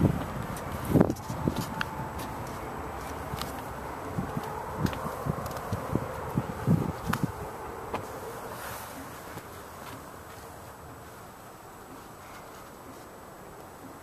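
Scattered knocks and rustles of a handheld camera being moved around a car's door frame and seats, over a faint steady hum. The knocks stop about eight seconds in, leaving a quieter hiss.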